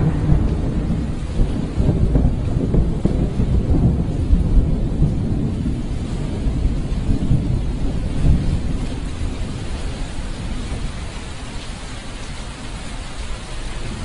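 A low, rumbling noise with a thin hiss above it and no clear pitch, slowly fading over the closing seconds.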